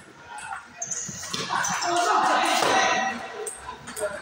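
Table tennis rally: the celluloid ball clicks off bats and the table. About a second in, a loud burst of voices takes over for about two seconds.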